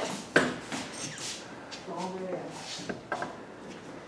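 A sharp click, then a few lighter clicks, from metal glazing tongs and a freshly glazed pottery bowl being handled on a worktable. Quiet voices come in about two seconds in.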